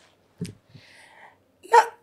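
A woman's short mouth or throat sound, then a soft breath in, before she starts to answer with a single word.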